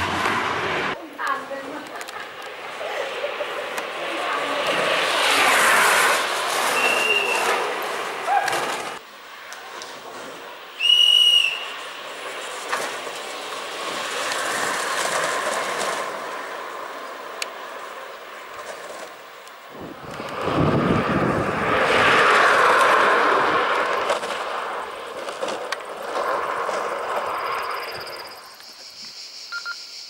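Engineless gravity racing karts rolling fast downhill on tarmac. Two passes of tyre and wheel noise swell and fade, with a short shrill high tone about eleven seconds in.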